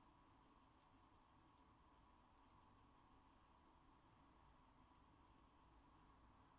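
Near silence: room tone with five faint, short clicks, four within the first two and a half seconds and one near the end.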